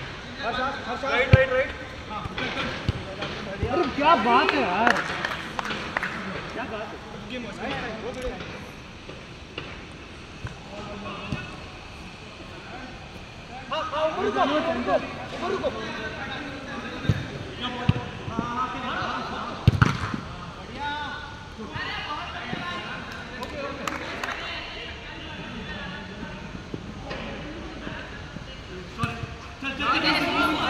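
Footballers calling and shouting to each other during a small-sided game on artificial turf, with sharp thuds of the ball being kicked now and then, the loudest about 20 seconds in.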